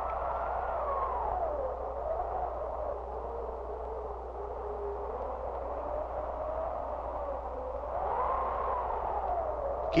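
Howling wind, likely a sound effect: a whistling tone that wanders slowly up and down over a steady hiss, with a low hum underneath.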